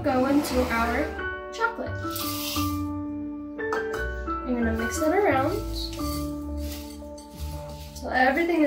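Background music: a mallet-percussion tune (vibraphone- or marimba-like) with a wavering singing voice. There is a short rustling hiss about two seconds in.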